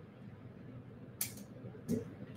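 Faint handling clicks of a faceted crystal bead and a pointed metal tool against a spool-knitted beading-wire tube as the bead is tried in its end; two short sharp clicks, about a second in and near the end.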